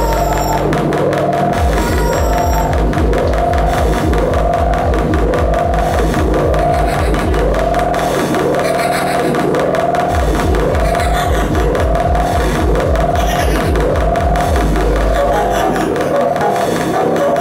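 Live electronic music played on electronic instruments: a repeating swooping synth figure a little more than once a second over a dense pulsing bass, playing without a break.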